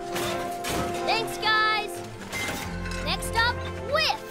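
Cartoon soundtrack: background music with short pitched sound effects, some sliding in pitch, and a few brief noisy whooshes.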